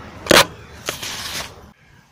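A sharp knock about a third of a second in, then a faint click and a short hissing rustle, before the sound cuts out near the end.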